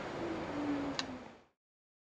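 Faint room noise with a single light click about a second in. The sound then cuts off to silence.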